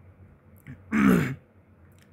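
A man clearing his throat once, a short rough sound about a second in.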